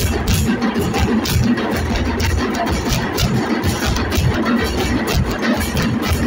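A dhol-tasha drum group playing: fast, sharp stick strokes on tasha drums over deep beats from the big dhol drums, in a dense, steady rhythm.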